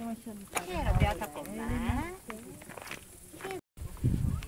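People's voices talking, indistinct, with a few small clicks. The sound drops out completely for a moment near the end at an edit.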